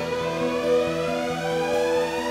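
Background music with a siren wail over it, rising slowly and steadily in pitch.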